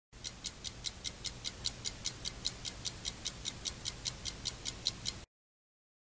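Steady, rapid ticking, about five ticks a second, over a faint low hum; it cuts off suddenly about five seconds in.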